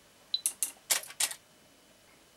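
Water-drop trigger rig firing: a short electronic beep, then a quick run of sharp mechanical clicks from the water drop valve's solenoid and the camera shutter.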